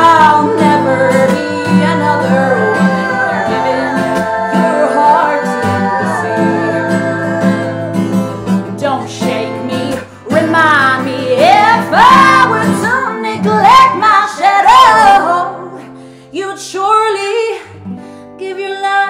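A woman singing over a strummed steel-string acoustic guitar, holding long notes in the first half, then, after a brief dip midway, singing swooping runs before easing off near the end.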